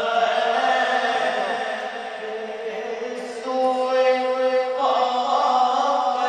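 A solo male voice reciting a naat, an Urdu devotional poem in praise of the Prophet, chanted melodically without instruments. There is a long held note in the middle, and a new phrase begins about five seconds in.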